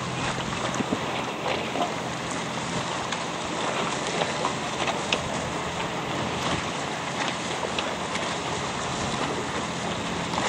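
Wind rushing over the microphone and choppy water splashing, a steady noise with scattered small slaps and ticks.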